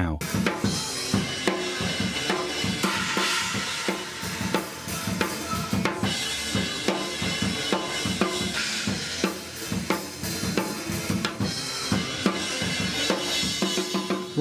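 Drum kit being played, drums and cymbals in a dense, unbroken run of strikes.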